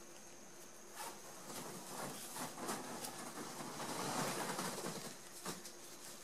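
Fingers handling grosgrain ribbon as a bow is pinched and gathered at its centre: faint, irregular rustling and scratching that starts about a second in, is loudest around four seconds and fades out near the end. A faint steady hum runs underneath.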